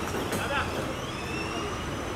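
Voices of several people calling out and talking outdoors, over a steady low background rumble.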